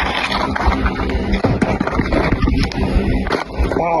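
Wind buffeting a phone's microphone, with handling noise from the phone: a loud, rough, uneven rumble heaviest in the low end.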